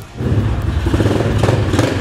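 A mini pit bike's small engine running under throttle as it is ridden, a rapid, even firing rhythm that starts just after the beginning.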